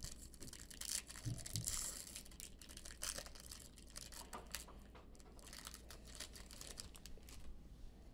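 Faint crinkling and tearing of a Bowman's Best baseball card pack wrapper being torn open by hand, a little busier in the first few seconds and quieter after.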